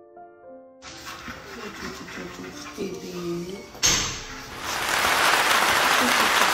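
Soft background piano notes end about a second in. A phone-recorded clip then starts, with a person's voice rising and falling, a sharp click near the four-second mark and, after it, a loud steady rushing noise.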